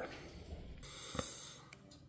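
Quiet pause: faint room noise with a soft breath and a light click about a second in.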